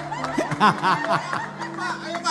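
People laughing in short, repeated bursts over background music with steady held notes.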